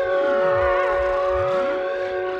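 Brass instruments with live electronics: several notes held steadily together, with siren-like electronic glides sweeping down and back up in pitch beneath and around them.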